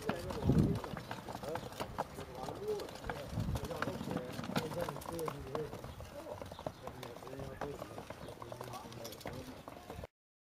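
Small metal-wheeled log cart rolling over a brick path, its wheels giving irregular clicks and knocks over the pavers, with a couple of low thumps about half a second and three and a half seconds in. Men's voices talk over it.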